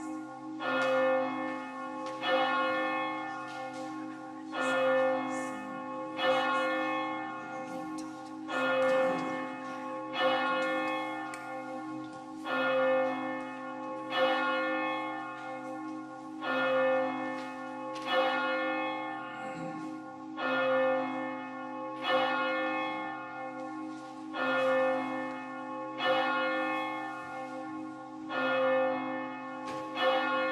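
Church bell tolling, one stroke about every two seconds, each stroke ringing on with a steady hum into the next.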